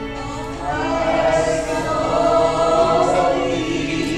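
A congregation singing a worship song together, growing louder about a second in.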